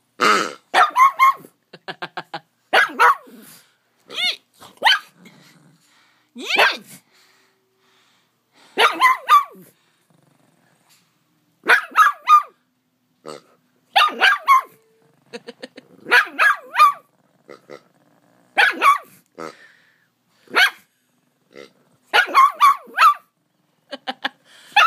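A pug barking repeatedly at a rubber pig toy, in clusters of one to four sharp barks every second or two.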